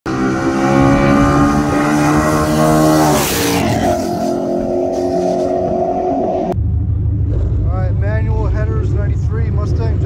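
Car engines running hard at full throttle as cars race on a highway. About three seconds in there is a sudden rush of noise and the engine pitch drops. About six and a half seconds in it cuts to a low, steady engine idle.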